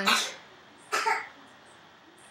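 A woman's single short cough about a second in, with faint room tone around it.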